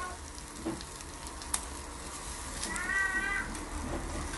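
Pork skewers and chicken sizzling on an electric grill, with a click of metal tongs about one and a half seconds in and a drawn-out cat meow about three seconds in.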